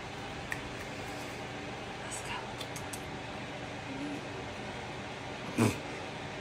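Steady low room noise with faint rustling of bedding as a dog is stroked, and one short vocal sound near the end.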